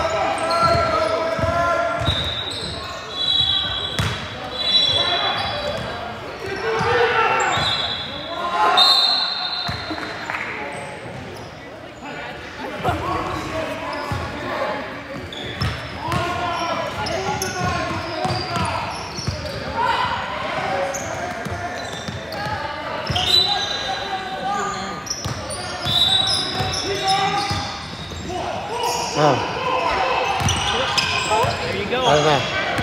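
Basketball game on a hardwood gym court: the ball bouncing, players and spectators calling out, and a few short high squeaks, all echoing in the large hall.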